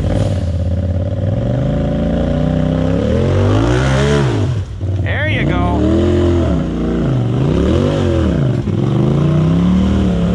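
Side-by-side UTV engine revving up and dropping back again and again in short throttle bursts, about one a second, as the tube-chassis buggy crawls up a steep rock ledge. A brief high rising squeal cuts in about halfway through.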